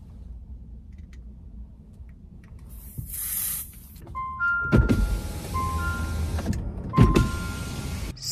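A short hiss from a Lysol aerosol spray can about three seconds in, then a car's power window motor raising the glass in two runs, the second shorter, with steady beeping tones over it.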